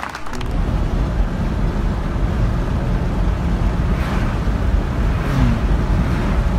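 Steady rumble of road and engine noise from a vehicle cruising on a highway, heard from inside the cab. It starts abruptly just after the start.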